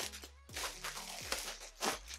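Plastic packaging crinkling and rustling as hands pull a garment out of a polythene mailer bag, with a louder rustle near the end.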